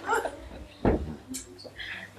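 A man's laughter trailing off in breaths, then a single dull thump a little under a second in and a brief papery rustle.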